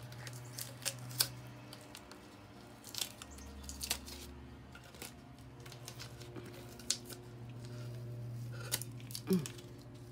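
Painter's tape being peeled off the back of a resin-coated glass tray, with irregular small crackles and snaps as it lifts away from the glass and from epoxy resin that has run over onto it.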